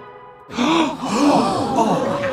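Wordless cartoon character voices: quick, overlapping rising-and-falling vocal sounds that start about half a second in, after a brief lull.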